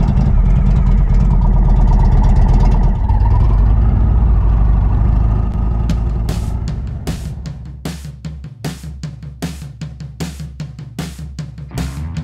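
Indian Roadmaster motorcycle's V-twin engine running loudly as the bike pulls away, with a brief rise in pitch about four seconds in. It fades after five or six seconds, and rock music with a steady drum beat of about two to three hits a second takes over.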